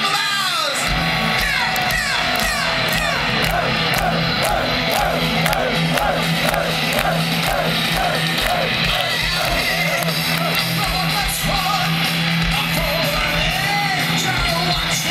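Heavy metal band playing live, heard from the audience: a wavering lead melody over bass and drums, which come in about a second in.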